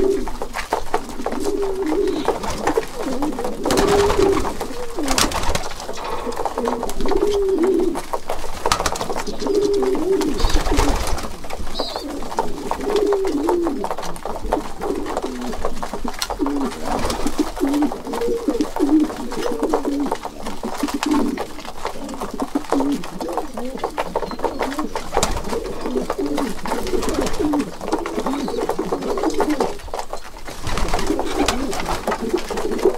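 A flock of racing pigeons cooing over one another without pause, with frequent sharp clicks of beaks pecking grain from a feeder.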